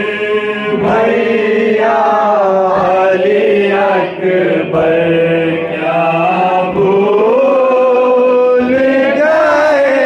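A man's voice chanting a noha, a Shia lament for Ali Akbar, into a microphone without instruments. He holds long, wavering notes in drawn-out phrases, with short breath pauses between them.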